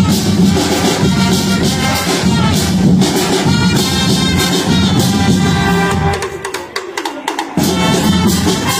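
A marching band of brass and drums plays live together. About six seconds in, the low brass and drums drop out briefly, leaving only sharp percussion strikes, and the full band comes back in near the end.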